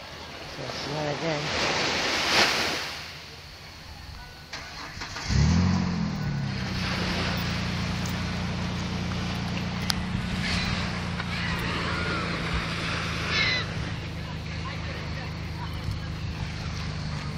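A vehicle engine starts up about five seconds in, its pitch rising briefly, then settles into a steady idle. Before it, a rush of noise swells and fades over the first few seconds.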